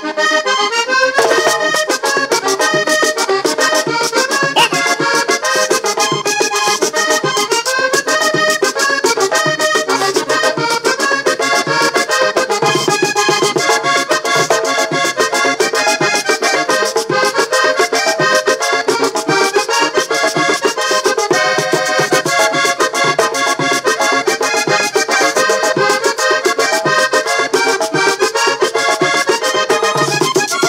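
Diatonic button accordion playing a fast vallenato paseo live, its quick runs of notes backed by a caja drum and the steady scraping rhythm of a guacharaca.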